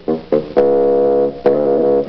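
Cartoon soundtrack music: two short notes, then a long held chord lasting about a second, and another shorter chord near the end.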